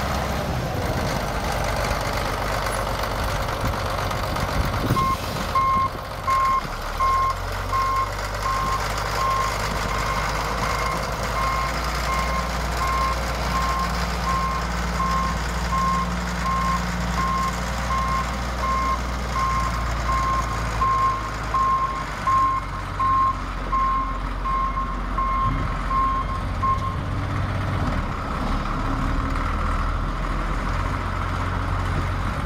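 Caterpillar 3306 six-cylinder diesel of a motor grader running steadily, its pitch shifting a few times. A reverse alarm beeps at an even pace, about three beeps every two seconds, from about five seconds in until near the end, the sign of a machine in reverse gear.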